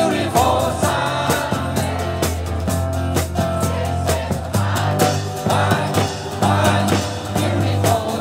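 Live band playing an upbeat rock-and-roll song on electric guitars, bass and a drum kit, with a steady drum beat and a melody line over it.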